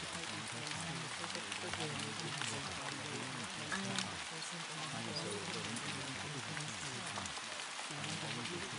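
Steady rain sound with scattered drop ticks, over a low murmur of layered spoken voice that never comes out as clear words.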